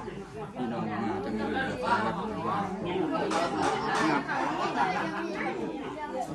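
Several people talking over one another: the indistinct chatter of a gathered group, no single voice clear.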